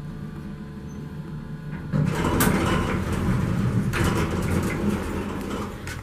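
Otis hydraulic elevator cab in motion: a low steady hum, then a louder rumbling and rattling noise that sets in suddenly about two seconds in. The rider says it does not sound very good.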